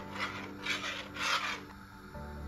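Metal spoon scraping against a stainless steel pot while stirring milk and vermicelli, three rasping strokes that stop shortly before the end.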